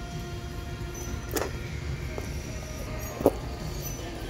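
Faint background music playing over a steady low store hum, with two short clicks from purses and their metal hardware being handled on a wire rack. The louder click comes near the end.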